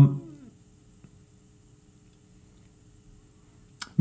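A man's voice trails off in the first half second, then near silence: room tone with a faint steady hum and one faint click about a second in.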